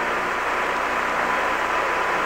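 Steady radio hiss of the Apollo 11 air-to-ground voice channel, open with no one transmitting, with a faint steady tone beneath it.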